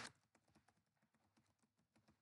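Near silence: room tone with a few faint, scattered light clicks.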